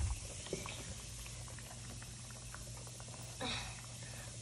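Large bath bomb fizzing under water with many small pops, while hands squeeze it and slosh the water in the tray; a light knock at the start and a brief louder rush near the end.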